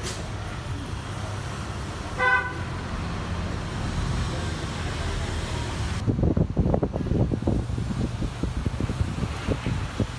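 A short vehicle horn toot from the street about two seconds in, over the steady low hum of an electric fan. From about six seconds in, a run of irregular dull thumps and rumbles.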